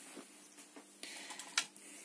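Faint handling noises as an RC car ESC is moved on and off the stainless steel plate of a kitchen scale, with one sharp click about one and a half seconds in.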